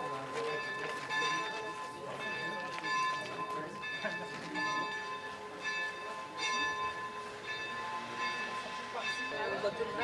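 Church bells pealing, a steady run of strokes about two a second, each bell's tone ringing on under the next.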